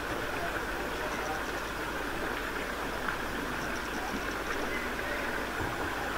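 Steady, even outdoor hiss of water, with no single event standing out.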